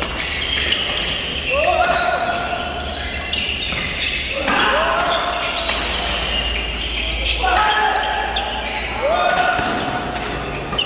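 Badminton doubles rally in a large echoing hall: sharp racket strikes on the shuttlecock at irregular intervals, with shoes squeaking on the court. Voices call out several times, each call held for about half a second to a second.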